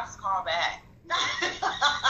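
A woman laughing in short, quick bursts of voice, after a brief pause about a second in.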